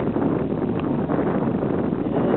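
Steady wind noise on the camera microphone: an even, fluttering rumble with no distinct events.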